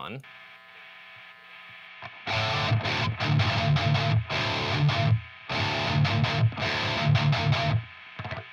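Heavily distorted electric guitar playing a tight metal rhythm riff in several bursts, with no noise gate on. Before the riff starts, about two seconds in, and in the breaks between phrases, the amp's hum and hiss are plainly heard: pretty noisy.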